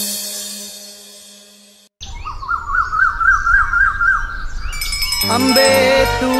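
A song's last sustained notes fade away over about two seconds. After a cut, a bird sings a fast warbling trill of quick rising-and-falling chirps over a faint hiss. A little after five seconds, new music starts.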